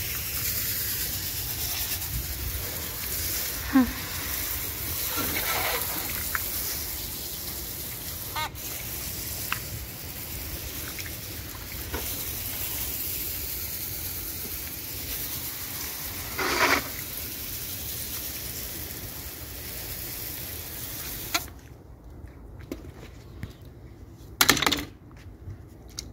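Water spraying from a garden hose onto a tiled floor: a steady hiss that cuts off suddenly about 21 seconds in. A few brief knocks follow, the loudest one near the end.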